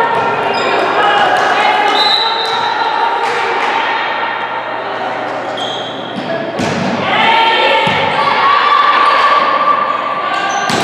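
Indoor volleyball being played in a reverberant gym: players calling out, sneakers squeaking on the hardwood floor, and the ball struck with sharp smacks about two-thirds of the way in and again about a second later.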